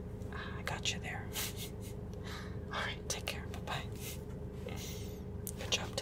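A man whispering in short breathy phrases over the steady low hum of the parked car's running engine.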